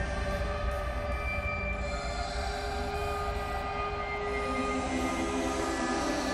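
Ambient electronic music: layered, held synthesizer drones over a deep low rumble, with a new lower note coming in about four seconds in.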